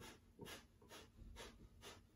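Breath of fire, the Kundalini yoga breathing exercise: quick, forceful breaths in and out through the nose, each exhale pushed by tightening the belly muscles. Faint, sharp nasal breaths at an even pace of about two a second.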